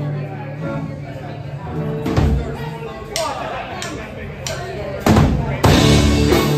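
Live rock band starting a song: held electric guitar and bass notes with scattered drum-kit hits and cymbal crashes, then two loud full-band hits near the end as the band comes in together.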